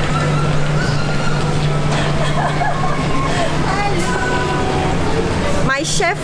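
Busy terminal-hall ambience: a steady low hum under indistinct chatter, then loud excited greeting voices breaking in just before the end.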